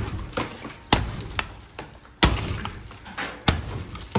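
Hammer blows knocking stucco and its wire lath out of a stud wall, three heavy strikes about a second and a half apart, each followed by the rattle of falling chunks, with smaller knocks between.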